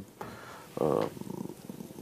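A man's brief voiced hesitation sound in mid-sentence, trailing off into a low, creaky, drawn-out murmur as he searches for the word.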